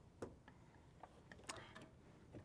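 Near silence with a few faint, irregular ticks from a Brother sewing machine stitching slowly around a corner of thick-pile minky fabric.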